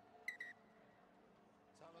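Referee's whistle, one short high blast about a quarter second in, as the try is awarded.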